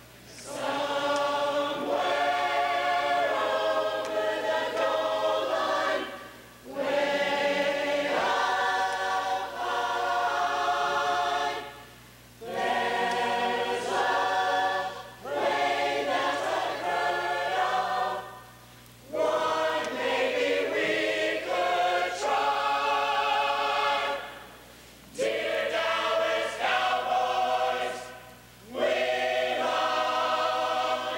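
Large student choir singing together, in sung phrases broken by brief pauses every few seconds.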